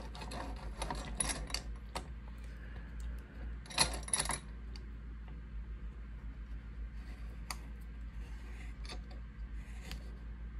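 Small metal clicks and knocks as a lock cylinder is fitted and clamped into a lockpicking bench vise, with a louder cluster of knocks about four seconds in and a few single clicks near the end.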